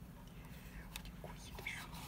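Faint whispered speech over a low, steady hum.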